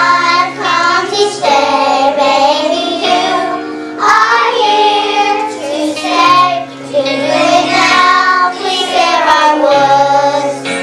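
Children singing a song together over instrumental accompaniment, with held backing notes and a changing bass line underneath the voices.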